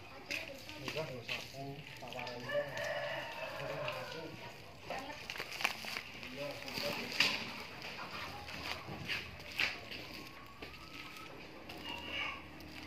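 A rooster crowing once in the background, a long call a couple of seconds in, over faint voices and a few sharp knocks.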